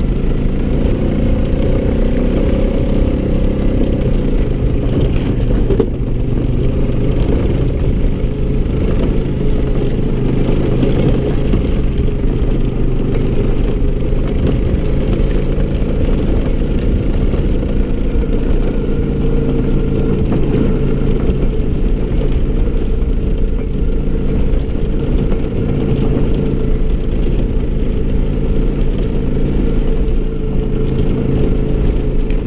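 ATV engine running steadily under way, a constant drone as the quad drives across a rough field track.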